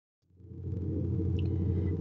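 Dead silence, then about a quarter second in a steady low hum of background recording noise begins and runs on unchanged.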